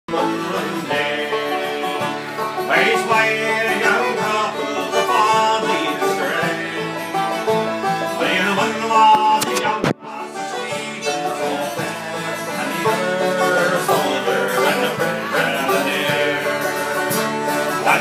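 Fiddle and acoustic guitar playing an instrumental folk tune together, with a brief dropout in the sound about ten seconds in.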